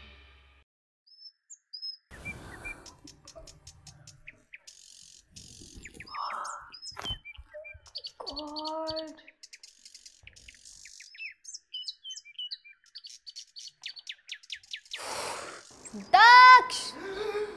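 Birds chirping and tweeting, many short scattered calls over a faint steady high drone: a morning bird chorus.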